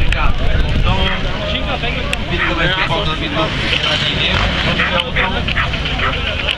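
A pack of enduro motorcycles running together as they ride off from a mass start, with voices over the engine noise.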